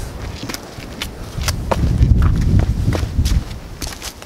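Footsteps and shoe scuffs on rock and dry leaf litter, a scatter of short clicks, as people climb down among boulders. A low rumble on the microphone swells through the middle of the clip and is the loudest part.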